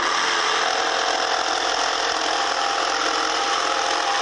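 Electric jigsaw starting up abruptly and cutting steadily through a wooden board, its reciprocating blade making a loud, even buzz. It is an interior cut, started from a drilled hole in one corner of the cutout.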